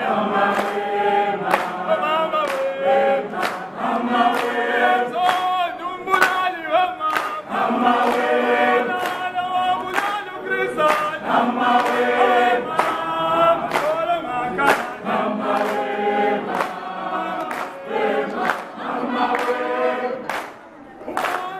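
A group of voices singing together in harmony over a steady beat of sharp strikes, about three every two seconds.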